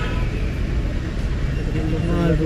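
Steady low rumble of street traffic, with faint background voices.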